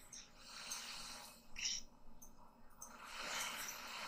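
Faint breathing, with a short hissing breath about a second and a half in.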